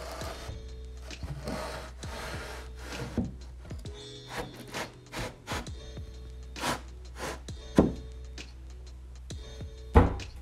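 Plywood sheet rubbing and sliding against timber as it is pushed into place, with several sharp wooden knocks, the loudest two near the end. Background music plays under it.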